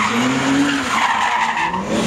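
BMW E30 drift car sliding sideways, its rear tyres skidding continuously while the engine note rises and falls with the throttle, dipping briefly near the end before climbing again.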